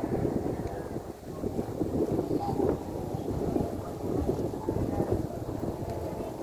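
Wind buffeting a phone's microphone, a steady, fluttering low rumble.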